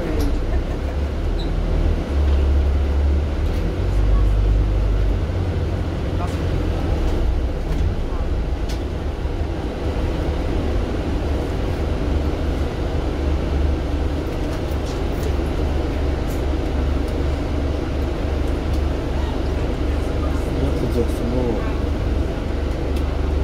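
Double-decker bus in motion heard from the upper deck: a steady low engine and road drone, louder for a few seconds near the start.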